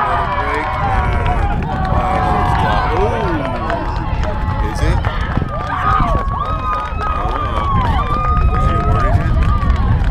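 Many voices from players and sideline spectators shouting and calling out across an open rugby pitch, overlapping one another, with several long, high calls in the second half, over a steady low rumble.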